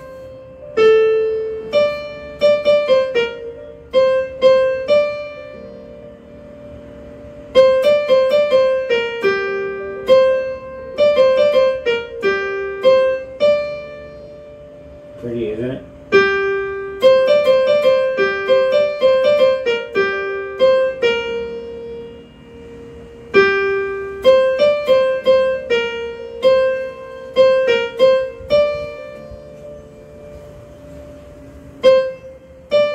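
Electronic keyboard on a piano voice, playing a simple single-note melody in short phrases with pauses between them, the halting way someone plays while learning a tune. About halfway through there is a brief voice sound in one of the pauses.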